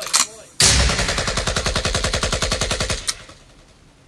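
A long burst of rapid automatic gunfire, about ten shots a second, starting just over half a second in and cutting off after about two and a half seconds.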